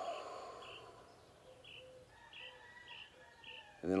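Faint bird chirping: short high chirps repeated roughly every half second, with a thin steady high tone joining in the second half.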